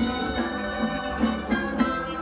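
Live band playing: electric guitar, drums and brass horns together in sustained chords, with a couple of sharp drum or cymbal hits about a second and a half in.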